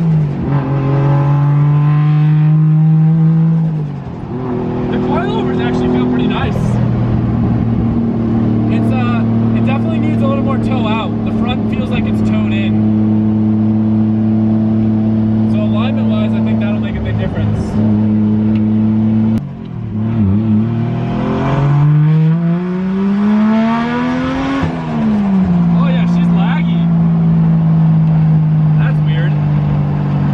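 Turbocharged 1JZ-GTE VVTi inline-six engine heard from inside the cabin, driven through the gears: the engine note holds steady at moderate revs, with gear changes near the start, about four seconds in and about twenty seconds in. About twenty seconds in the revs climb steadily for several seconds, then drop sharply at a shift and settle to a steady cruise.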